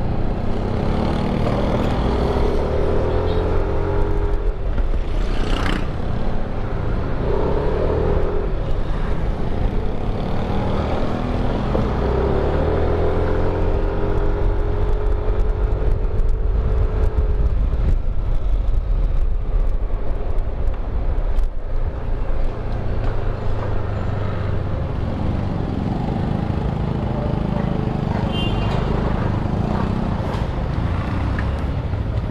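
Motor scooter engine running while riding at town speed, with steady wind and road rumble on the mount-camera microphone. Several drawn-out engine notes sag slowly in pitch as the throttle eases, and there are a couple of brief knocks.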